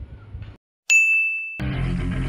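Room sound cuts off abruptly, and after a moment of dead silence a single bright ding rings out. It is an edited-in chime sound effect, and background music starts under it near the end.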